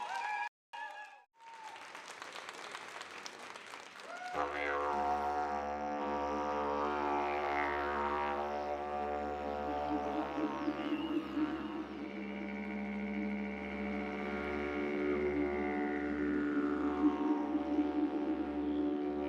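Music with a didgeridoo drone: a steady low drone with a throbbing pulse and overtones that sweep up and down starts about four seconds in. Before it there is a brief cut to silence and a few seconds of faint hiss-like noise.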